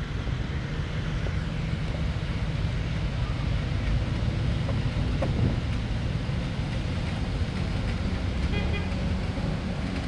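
Engines of WWII-style military jeeps running at low speed as they drive past, a steady low drone.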